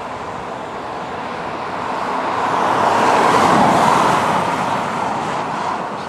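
Road traffic: a passing vehicle's tyre noise swells to a peak about halfway through, then fades.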